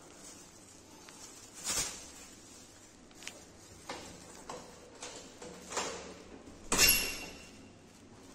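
A few scattered knocks and clicks at an apartment entry door. The last, near the end, is the loudest and carries a brief metallic ring.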